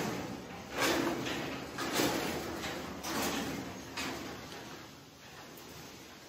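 About four dull thumps roughly a second apart, each dying away slowly, growing fainter toward the end.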